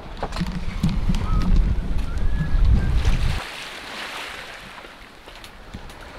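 Wind buffeting the microphone over water rushing along the hull of a sailing yacht under way. The low rumble stops abruptly about three and a half seconds in, leaving a softer hiss of wind and sea.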